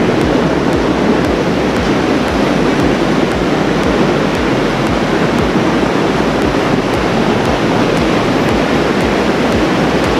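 Water pouring over a river weir: a steady, unbroken rushing that sounds like surf on a beach.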